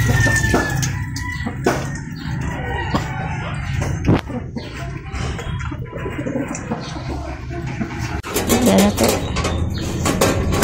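Backyard chickens clucking and a rooster crowing, with music playing behind them.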